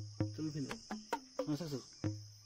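A long-handled chopping knife hacking into a raw jackfruit, a quick series of sharp chops, each with a short dull knock. A steady high insect chorus runs underneath.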